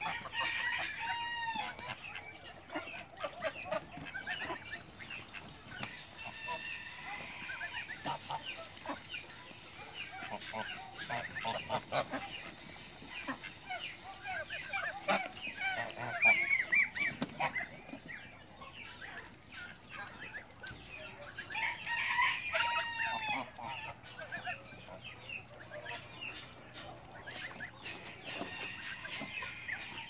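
Farmyard poultry calling: Embden geese and chickens, with clucking and a couple of louder arched calls, one about a second in and another around 22 seconds in.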